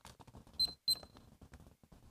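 Two short, high electronic beeps, about a third of a second apart.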